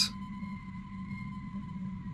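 Ambient background music: a low steady drone with a thin, high held tone above it.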